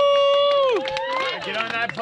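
Voices of a small group: one high voice holds a long shout for about a second, then several people talk and laugh over each other.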